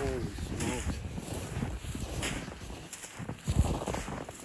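A man's voice says "Holy" at the start. After that comes uneven crunching of footsteps in snow, with wind buffeting the microphone.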